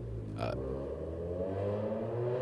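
A faint engine drone, rising slowly in pitch like a passing vehicle, over a steady low hum, with a short spoken 'uh' about half a second in.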